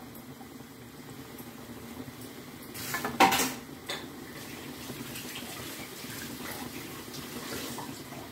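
Bhajiya fritters deep-frying in hot oil in a small metal kadhai: a steady bubbling sizzle. About three seconds in, a brief clatter of metal against metal.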